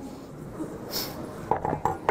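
Small clinks and knocks from a wooden disc and a nickel hoop being handled and set down at the top of a wooden ramp: one brief bright clink about a second in, then a few light knocks near the end.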